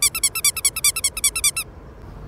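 An edited-in sound effect: a rapid run of high, bird-like chirps, about nine a second, that starts abruptly and stops suddenly after about a second and a half.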